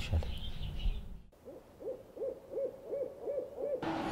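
About a second in, a man's speech stops. After a brief gap comes a string of about seven short, evenly spaced hooting notes, about three a second, each rising and falling in pitch.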